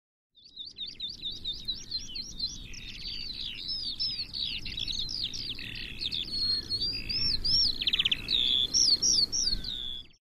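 A songbird singing a fast, continuous, varied song of high chirps, whistles and trills, over a low rumble. It begins just after the start and grows louder toward the end.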